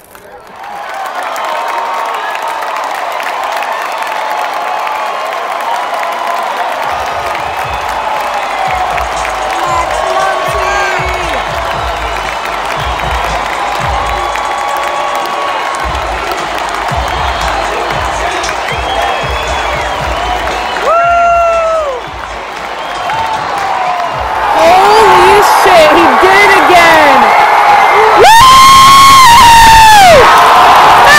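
Baseball stadium crowd: a continuous din of many voices and shouts that swells into loud cheering and yelling near the end, the crowd's reaction to a game-winning walk-off hit.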